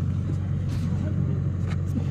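Steady low background hum with a few faint clicks.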